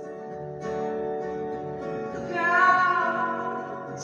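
Live folk-rock band music: acoustic guitar playing under a sustained lead melody line that swells louder about halfway through.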